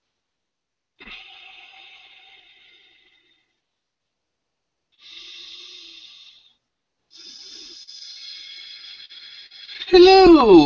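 Three slow, deep breaths, faint and hissy over a video-call link, with silence between them. Right at the end a voice starts a loud moan that falls in pitch.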